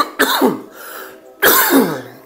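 A man coughing twice, about a second apart, while he has the flu.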